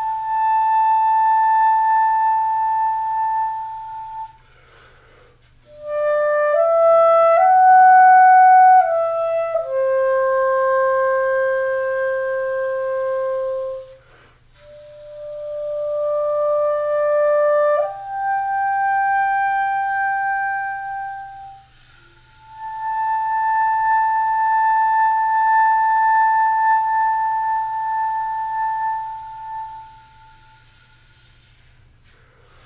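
Clarinet playing a slow, soft solo line of long held notes, with one quick run of short stepping notes near the start. The phrases are split by short breath pauses, and the line ends on a long held high note.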